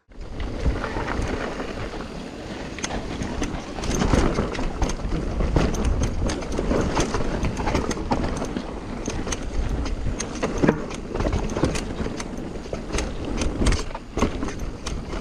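Mountain bike descending a rough, dusty trail: tyres rolling over dirt and rocks, with frequent clicks and rattles from the bike being bumped about, and wind buffeting the microphone. The sound starts abruptly at a cut.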